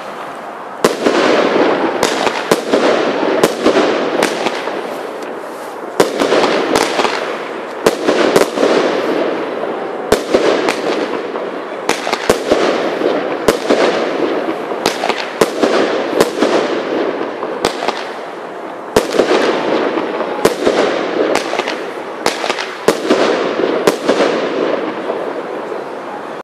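Lesli Black Thunder Kong 16-shot salute battery firing: very loud titanium flash-salute bangs, mostly about a second apart, starting about a second in, each trailing off in echo.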